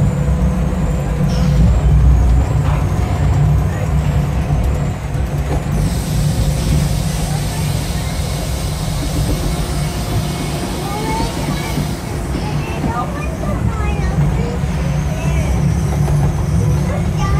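Amusement-park ride car running along its steel track: a steady low rumble, with a hiss that comes up for several seconds in the middle.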